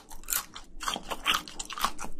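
Close-miked chewing of a mouthful of spicy braised seafood: wet, crunchy bites and clicks coming irregularly, about two to three a second.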